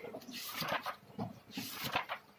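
A hand rubbing and rustling a sheet of paper on a hard floor: two scratchy strokes, about a second and a half apart.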